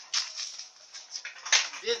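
Homemade steel-pipe exercise rig being tilted and rolled on its salvaged loader wheels over stone paving, giving a scraping, rattling noise.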